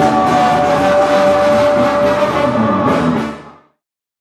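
Mexican banda playing live: trumpets, clarinets and tuba over drums, with a long held note in the middle. The music fades out quickly to silence near the end.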